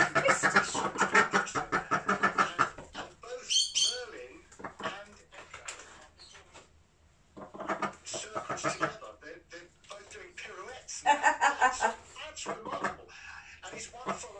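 Khaki Campbell duck quacking in a quick run of calls, mixed with human voices and laughter.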